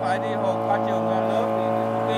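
Long-tail boat engine running steadily, a constant even drone, with faint voices over it.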